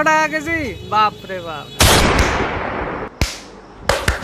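A man's voice for a moment, then about two seconds in a sudden loud blast, like an explosion or gunshot effect, that dies away over about a second, followed by a single sharp crack.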